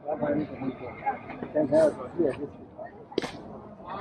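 Voices calling out on a sports field, with no clear words, and a single sharp crack about three seconds in.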